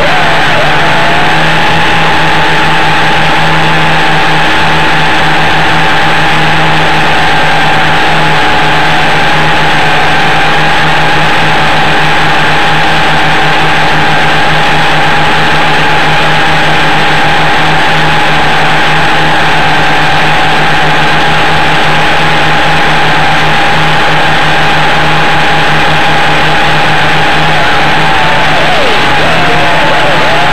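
WLtoys V262 quadcopter's motors and propellers running, a loud, steady high-pitched whine with a low hum under it, heard close up. The pitch wavers up and down near the start and again near the end as the throttle changes.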